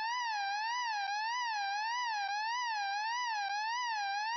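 A continuous warbling tone, its pitch rising and falling evenly a little under twice a second at a steady level.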